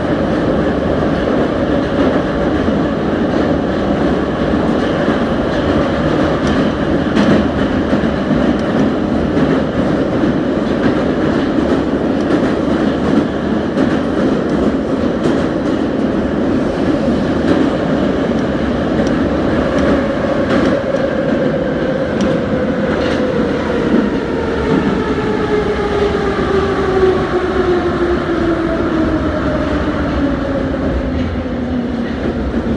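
Metro train running through the tunnel, heard from inside the car: a steady rumble with the clatter of wheels over the rails. In the last third the motor whine falls steadily in pitch as the train slows into a station.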